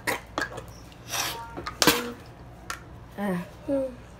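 A girl coughing and clearing her throat after gulping sour candy water, in several short sharp bursts, followed by two short vocal sounds near the end.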